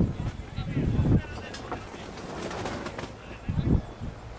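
Low cooing calls of a dove-like bird, coming in two spells: one through the first second and a shorter one shortly before the end.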